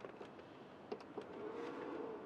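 A few light plastic clicks and knocks as a Jackery portable power station is handled and turned around on a shelf, about a second in, followed by a faint hum that swells and fades.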